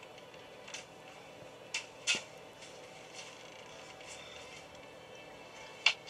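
Quiet film soundtrack playing through a portable DVD player's small built-in speaker: a low steady hum with four sharp clicks or knocks, the loudest near the end.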